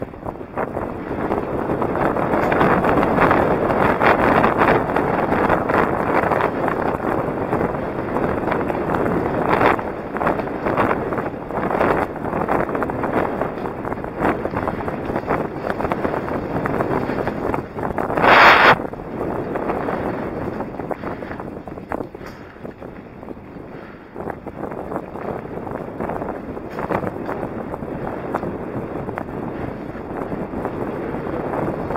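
Wind buffeting the microphone and mountain-bike tyres rolling over a dirt and gravel trail, a loud, uneven rushing noise. About eighteen seconds in comes a short burst of noise, the loudest moment. After that it runs a little quieter.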